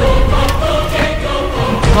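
Soundtrack music with a choir singing held notes over a steady heavy bass.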